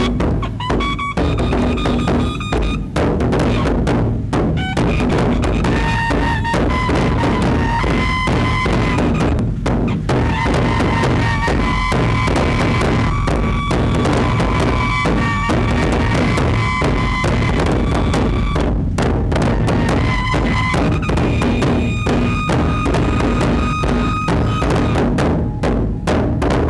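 Large nagara drums beaten with pairs of sticks by several drummers in a fast, continuous, loud rhythm. Long held high notes sound above the drumming at times.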